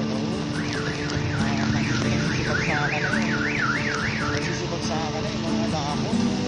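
An electronic alarm or siren warbling rapidly up and down in pitch, about three cycles a second, starting just after the beginning and stopping about two-thirds of the way through, over background music with sustained notes.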